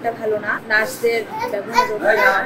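Speech only: a young woman speaking Bengali into a reporter's microphone.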